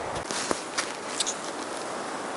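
Several light clicks and scuffs of handling noise close to the microphone as the camera is moved, over a steady faint hiss.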